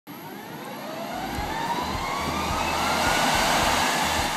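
Jet engine noise growing steadily louder, with a thin turbine whine rising in pitch throughout.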